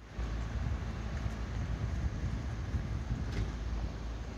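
Outdoor street noise: wind rumbling on the microphone over road traffic.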